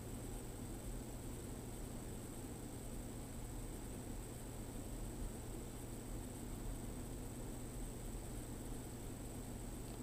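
Steady low hiss with a faint constant hum: room tone and recording noise, with no distinct sounds.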